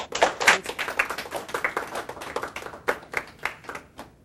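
A small audience applauding at the end of a lecture, individual claps distinct, thinning out near the end.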